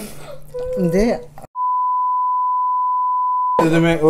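Laughing talk cut off about a second and a half in by an edited-in censor bleep: one steady, high, pure beep of about two seconds over total silence, blanking out a spoken word. It stops abruptly and the talk resumes.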